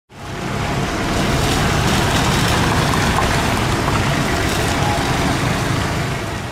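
Street traffic: a pickup and several motorcycles passing, a steady mix of engine and tyre noise that fades in at the start.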